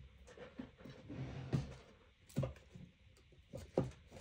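Light handling noise from markers and their boxes being rummaged through while searching: a few scattered soft knocks and clicks, with a short low hum about a second in.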